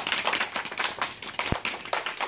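A small group of children applauding, with many uneven, overlapping hand claps.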